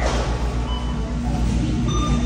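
Steady supermarket background noise: a low rumble of store machinery and room sound, with a brief faint high tone about a second in.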